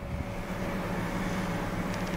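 Steady low hum of a 2010 Toyota Venza idling, heard from inside its cabin.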